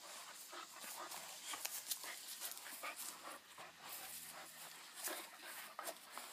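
A dog panting and moving about on a leash: faint, irregular breaths with scattered small clicks and rustles.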